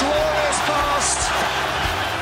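Stadium crowd cheering a goal in a loud, dense roar, with a shouting voice rising and falling over it.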